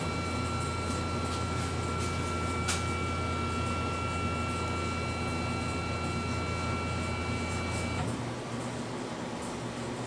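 Laser engraver's gantry motors driving the head across the bed to a saved position: a steady mechanical whine with a low hum underneath, one small click a few seconds in, cutting off about 8 seconds in when the head stops.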